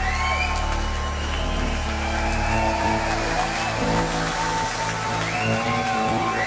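Live electronic synth-pop: sustained synthesizer chords with sliding tones, the closing bars of the song, the low bass thinning out about halfway through.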